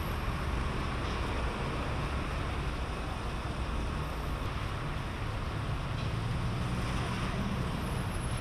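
City street ambience: a steady hum of road traffic with a low rumble.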